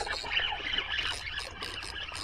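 Spinning reel being cranked to bring in a just-hooked fish: a steady hiss with a fast run of small ticks, about five or six a second, in the second half.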